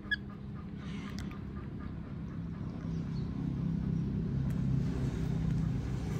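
A low, steady motor-like rumble that grows louder from about halfway through, with a brief high chirp right at the start.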